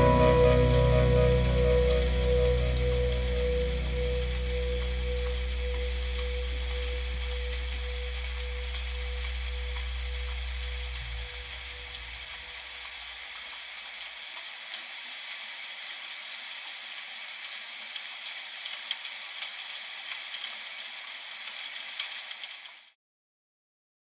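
The song's last chord sustains and fades away over about the first eleven seconds, leaving a steady rain-like hiss. A few faint ticks sound in the hiss near the end.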